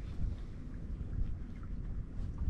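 Wind on the microphone: an uneven low rumble out on open water.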